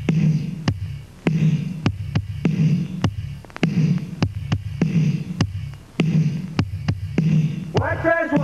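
Instrumental intro of a band's song: a steady beat of sharp drum hits, about one every half second or so, over a low throbbing bass pulse that repeats about every second. A man's singing voice comes in near the end.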